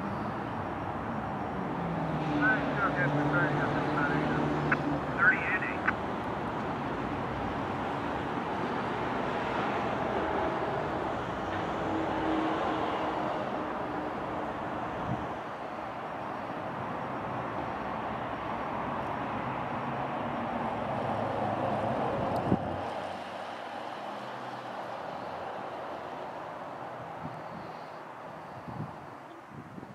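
Diesel freight locomotive running as it moves a train of covered hoppers slowly through a grade crossing, its engine and the rolling cars giving a steady low rumble. There are a few short high squeaks in the first several seconds, and one sharp knock about 22 seconds in, after which the rumble falls away.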